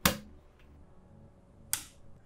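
Two sharp plastic clicks at a power strip about 1.7 seconds apart, as the Sonoff switch's power plug is pushed into a socket and the socket's rocker switch is snapped on.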